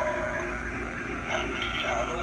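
A Halloween animatronic skeleton's recorded, electronically processed spooky voice playing from its built-in speaker, wavering in pitch.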